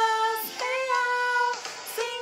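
A woman singing a Portuguese children's worship song along with a recording that carries children's voices, holding long sung notes.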